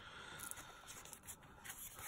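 Faint rustling and sliding of paper as stamp items are handled on a tabletop, with a few soft scrapes.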